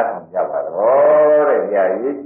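A Buddhist monk's voice giving a Burmese dhamma talk, with long, drawn-out syllables that rise and fall in pitch. A faint steady hum runs beneath.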